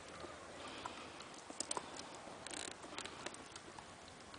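Faint, scattered light clicks and ticks from a saddled horse standing with its rider and from its tack, with one brief hiss about two and a half seconds in.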